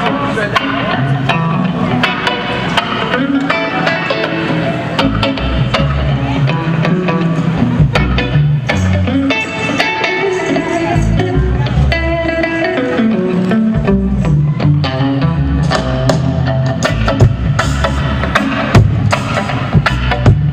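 A band playing a song with electric guitar, bass and drums keeping a steady beat.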